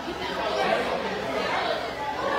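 Many people talking at once in a restaurant dining room: steady background chatter of diners, with no music playing.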